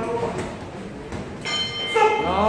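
Boxing ring bell struck about one and a half seconds in, ringing on with a steady tone: the bell ending the round.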